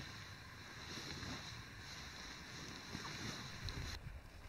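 Wind noise on the microphone: a soft, unsteady rush with no distinct events.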